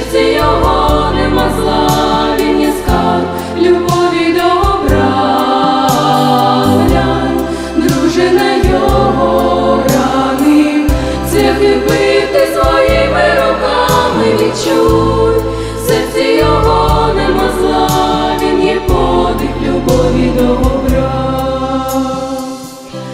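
A women's vocal ensemble singing a Christian song in harmony into microphones, over an accompaniment with a steady bass line.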